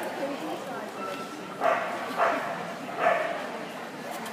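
Vizsla barking three times in quick, short yips, about half a second apart, with excited start-line eagerness.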